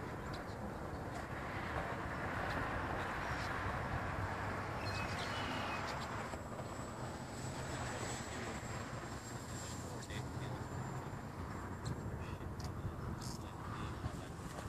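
Electric model airplane flying high overhead, its motor a faint thin high whine from about six to ten seconds in, over a steady wash of outdoor wind and field noise.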